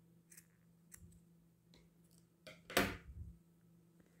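Scissors snipping cotton crochet twine: a few faint clicks of the blades, then a louder cluster near three seconds in.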